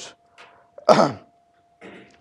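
A man coughs once, about a second in.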